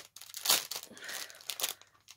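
Wrapping on a soft parcel crinkling and tearing as hands open it, in irregular rustles with a sharper crackle about half a second in.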